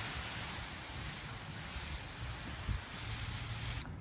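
Garden hose spray nozzle spraying water onto loose soil and plants, a steady hiss that stops suddenly near the end.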